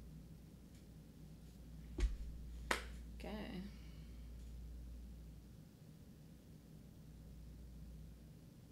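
Two sharp clicks about a second apart, the first the louder, followed by a brief wavering pitched sound, over a low steady hum.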